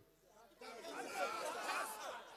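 A congregation's many voices saying a phrase back together, a call-and-response answer that starts about half a second in.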